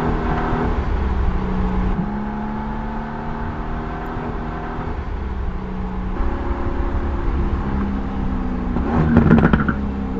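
Mercedes-AMG GT R's twin-turbo V8 running as the car drives, with a steady engine note that grows stronger in the second half. Near the end comes a burst of exhaust crackles, the loudest part.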